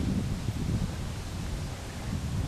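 Wind buffeting the camera's microphone outdoors: an uneven low rumble with a faint hiss.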